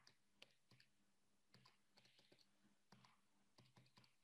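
Near silence with about a dozen faint, irregular key clicks, from keys being pressed to add up a column of numbers.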